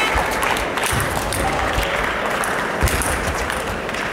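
Spectators applauding in a sports hall, many hands clapping at once and slowly thinning out.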